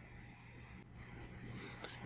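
Faint room tone with a steady low hum and no distinct event, apart from a small tick near the end.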